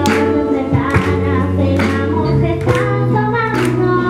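A young girl singing a song into a handheld microphone over an instrumental accompaniment with a steady beat.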